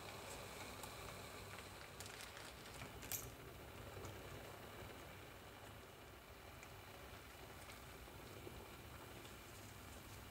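Near silence: faint room tone with a low hum, broken by a few soft clicks about two and three seconds in.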